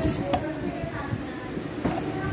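Freezer compressor running during a refrigerant pressure check: a steady, uneven low mechanical rumble.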